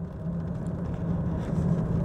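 Car engine and road noise heard from inside the cabin while driving: a steady low hum with a light haze of tyre noise.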